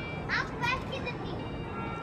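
Two short, high-pitched voice calls within the first second, over faint background music.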